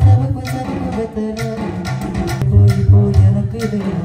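A live band playing amplified music with a prominent bass guitar line, a steady drum beat and guitars.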